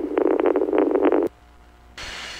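Police radio transmission, thin and band-limited, that cuts off suddenly a little over a second in, leaving only a low hum on the line.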